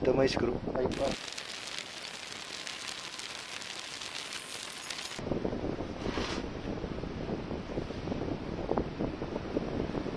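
Hands handling and routing a wire cable along an electric scooter's deck, giving faint rustling and handling noise. A steady hiss runs for about four seconds, then gives way to a rougher rumbling noise like wind on the microphone.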